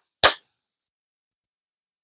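One sharp hand clap about a quarter-second in, the last of a slow, even run of claps.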